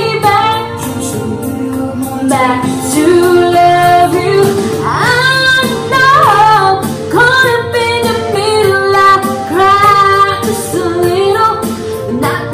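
A woman singing a slow pop ballad over a karaoke instrumental backing track. Her line is made of held notes that slide and waver in pitch.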